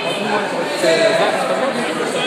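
Background chatter: several people talking indistinctly in a large gym hall.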